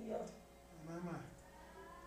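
Two faint, drawn-out vocal sounds from a person's voice, one at the start and one about a second in, each rising and then falling in pitch, like a murmured "mm" or "yes" in response to a preacher.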